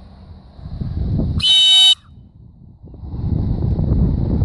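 One short blast of a dog-training whistle, about half a second long, sounded as the stop signal that tells the retriever to halt and sit. Wind rumbles on the microphone before and after it.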